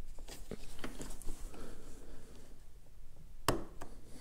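Light clicks and rustling of wiring being handled as a connector is pushed onto the terminals of a dash rocker switch, with one sharper click about three and a half seconds in.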